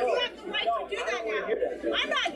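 Speech only: several people talking over one another, played back through a television's speaker.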